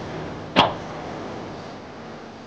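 A single sharp whoosh-and-strike sound effect, like a martial-arts blow, about half a second in, dying away quickly over a steady noisy background.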